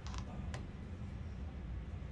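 Steady low hum of room background noise, with two short clicks in the first half second.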